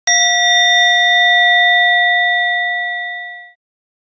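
A Buddhist ritual bell struck once, marking a prostration in the repentance liturgy. It gives a clear ringing tone with bright high overtones that fades slowly, then cuts off suddenly after about three and a half seconds.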